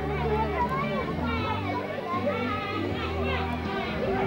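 A group of children chattering and calling out as they walk, over background music with long held low notes.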